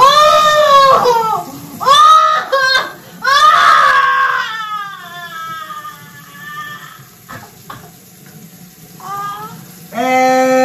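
A woman shrieking with laughter: three loud high-pitched cries in the first four seconds, drawing out into a long falling wail, then a short cry near the end.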